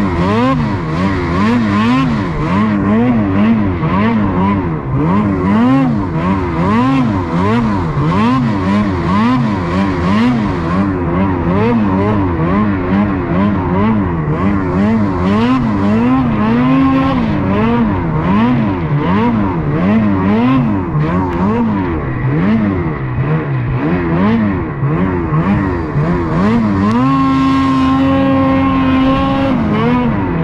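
Ski-Doo snowmobile engine on board, revving up and down over and over about once a second as the sled picks its way through deep powder between trees. Near the end it holds one steady high pitch for about two seconds before dropping off.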